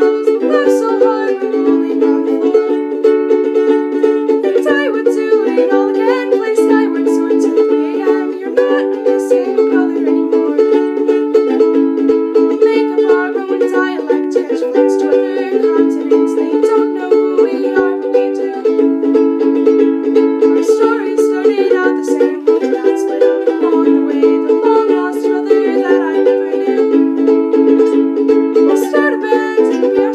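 Ukulele strummed in steady chords that change every second or two, with a girl's voice singing along.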